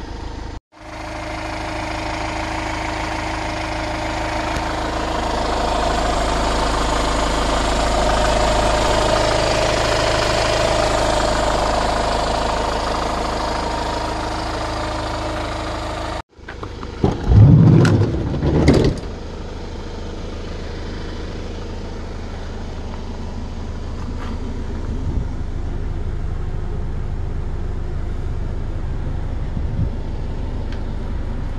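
Hyundai Grand Starex van's engine idling steadily. Just past halfway it gives two short, loud surges, then settles back to a steady, quieter idle.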